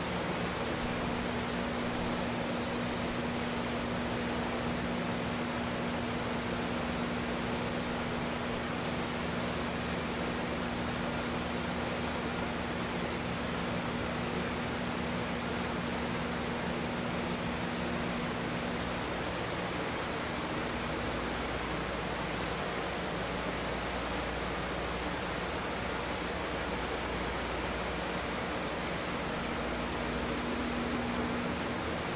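Moyno progressive cavity pump and its electric drive motor running while recirculating water: a steady hum over an even rushing noise. About two-thirds of the way through the hum turns deeper.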